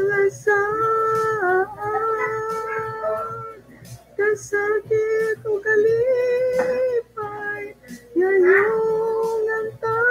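A solo high voice singing a Visayan song unaccompanied, with long held notes broken by short pauses for breath.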